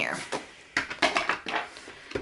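Pages of a spiral-bound paper planner being flipped and handled: a quick run of paper rustles and light clicks, thickest in the second half.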